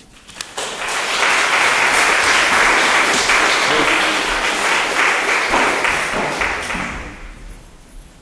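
Audience applauding, swelling up within the first second, holding steady, then dying away over the last couple of seconds.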